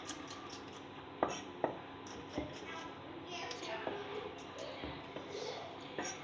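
Chef's knife slicing garlic cloves on a wooden cutting board: a few sharp taps of the blade on the board, the two clearest a little over a second in and the rest faint.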